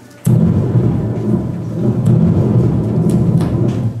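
Thunder sound effect played over loudspeakers: a loud low rumble that starts suddenly about a quarter second in and stops just before the end.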